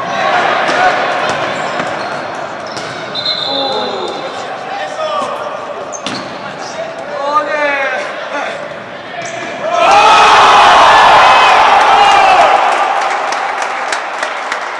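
Futsal match in an indoor hall: ball strikes and bounces on the court with players' shouts echoing. About ten seconds in, loud shouting and cheering breaks out for about two and a half seconds as a goal goes in.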